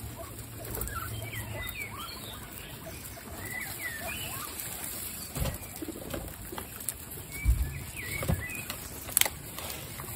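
A herd of guinea pigs eating fresh grass on straw: steady rustling and nibbling, with many faint, short high chirps scattered through. A few bumps stand out in the second half, and a sharp click comes near the end.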